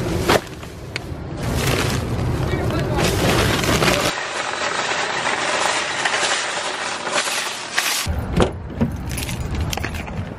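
Plastic grocery bags rustling and knocking as they are loaded in, then a wire shopping cart rattling steadily as it is rolled across pavement for a few seconds, with a few knocks near the end.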